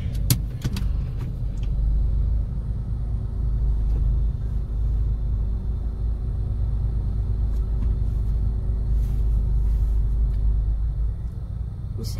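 Car idling and creeping forward, heard from inside the cabin as a steady low rumble with a faint hum, and a sharp click just after the start.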